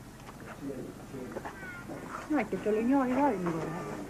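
An animal's drawn-out, wavering call about two and a half seconds in, over faint background voices.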